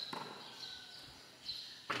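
A basketball bouncing on a concrete court: one thud at the start and another near the end, with low background noise between.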